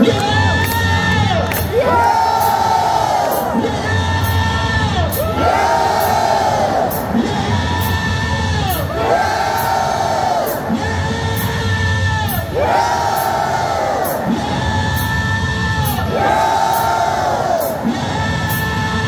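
Live blues-rock band playing in an arena, with the crowd singing and cheering along. A short rising-and-falling phrase repeats about every two seconds over a steady beat.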